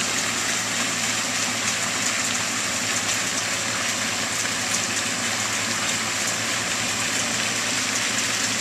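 Steady rushing noise of running water, even and unbroken, with no goose calls standing out.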